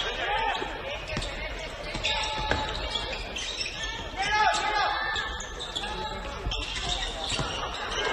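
A basketball being dribbled and bouncing on a hardwood court during live play, with sneakers squeaking in short rising-and-falling chirps and voices calling out.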